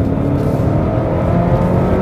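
Chevrolet Malibu's 2.0-litre turbocharged four-cylinder engine at full throttle, its revs climbing steadily.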